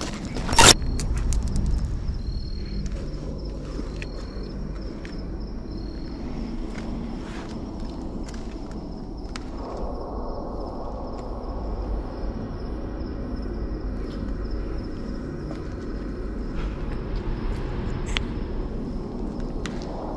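Footsteps and handling noise as people walk over a rough floor, with scattered clicks and a single loud sharp knock about a second in. A faint steady high whine runs under it.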